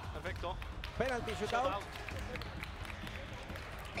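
Faint, brief voices over a steady low background rumble from a match broadcast feed, much quieter than the commentary around it.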